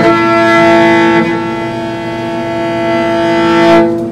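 Morin khuur (Mongolian horsehead fiddle) bowed on one long held note, swelling just before it stops a little before the end.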